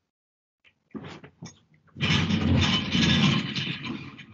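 Rustling handling noise on a headset microphone as a person moves about and picks up a book: a few small knocks, then a loud rustle lasting about two seconds in the second half.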